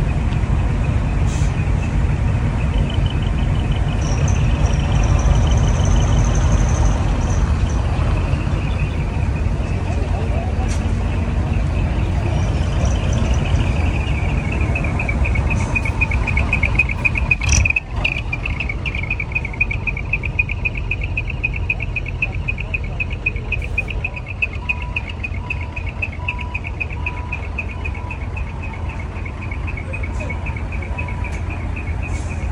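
Large bus's diesel engine running at low speed as it drives slowly past, with a sharp knock about halfway through. From about halfway on, insects trill steadily over the engine.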